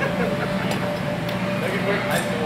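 Indistinct background chatter of several people in a large, echoing hall, over a steady hum, with a couple of faint clicks.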